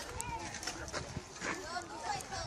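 Faint, indistinct voices of people talking in the background.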